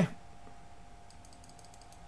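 Light clicking on a computer keyboard, a quick run of faint clicks in the middle, over a steady faint hum.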